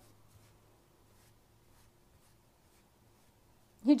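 Faint, soft scratching of a wooden tool worked into the seam of a clay plate's foot ring, barely above room tone.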